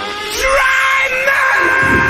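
Rock song with a screamed vocal note that comes in about half a second in and is held at one steady pitch, the drums returning near the end.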